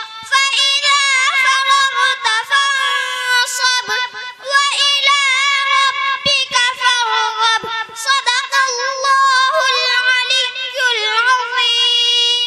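A young girl's voice chanting a Quran recitation (tilawat) into a microphone, in long melodic phrases with brief pauses for breath between them.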